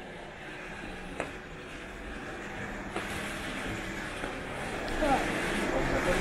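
Steady background hum of a shop with a few light clicks, and faint voices coming in near the end.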